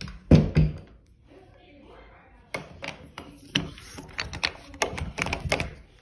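A door being worked by its brass knob and latch: two loud knocks about half a second in, then a run of clicks and rattles over the last few seconds.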